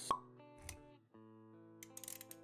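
Motion-graphics intro music with a single sharp pop sound effect right at the start, followed by a softer hit a little later; the music drops out briefly about halfway through, then resumes.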